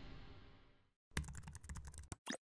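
Keyboard typing sound effect: a quick run of about ten sharp key clicks starting about a second in, after the fading tail of the background music dies away.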